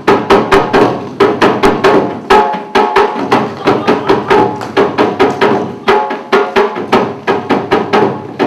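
Drums beaten in a fast, steady rhythm, about five sharp strokes a second, each with a short pitched ring.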